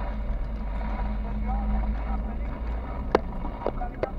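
Car driving at low speed, heard from inside the cabin: a steady low road and engine rumble, with a couple of sharp clicks or rattles about three seconds in.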